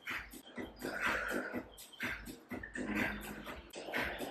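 A woman breathing hard during an exercise, several audible breaths in and out, roughly one a second.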